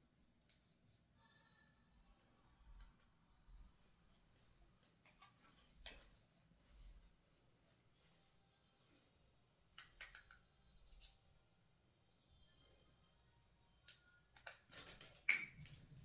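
Near silence with scattered faint clicks and taps from handling wireless earbuds and their plastic charging case, ending in a louder cluster of clicks and rustling near the end.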